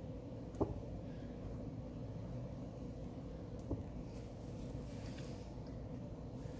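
Quiet steady room hum with two small clicks about three seconds apart, the first the louder.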